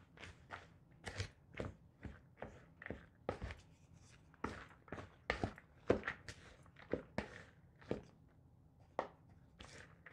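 Wooden spoon stirring and turning a mix of chopped herbs, rice and cooked split peas in an enamel bowl: a run of short scrapes and knocks, about two a second, unevenly spaced.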